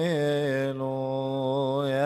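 Coptic Orthodox liturgical chant by male voice: a long, steadily held note in the middle, with melismatic turns in pitch before and after it.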